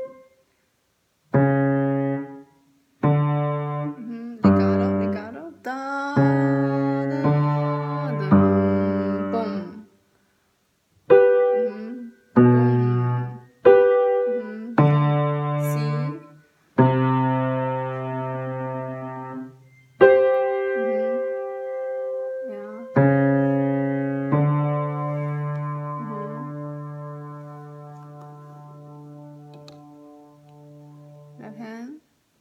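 Piano played slowly in separate chords, alternating low and middle notes, each struck and released with short pauses between some of them. Near the end a chord is held and fades away.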